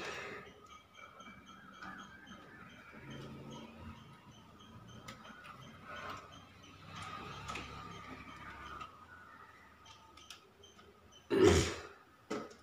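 Faint scattered clicks and taps of hand work at an open circuit-breaker panel, with one louder thump near the end.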